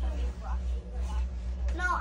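Mostly speech: faint talk over a steady low hum, then a woman's voice growing louder near the end.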